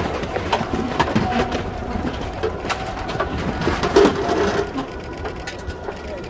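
Busy crowd moving through a large, echoing airport hall: many scattered sharp clicks and footsteps on the hard floor, with brief low voices, loudest about four seconds in.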